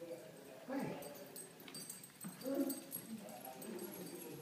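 Westie and Havanese puppies whining in short cries as they play, the loudest about a second in and again just past the middle.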